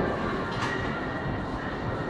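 Carriage of a heavily loaded plate-loaded leg press rolling along its guide rails as the weight is lowered, a steady rumble.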